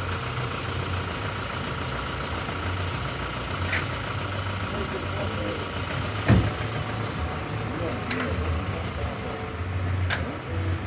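A car engine idling steadily, with faint voices, and one sharp knock about six seconds in.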